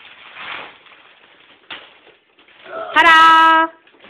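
Wrapping paper rustling and tearing as a child breaks out of it, then about three seconds in the child gives one loud, held shout lasting about a second.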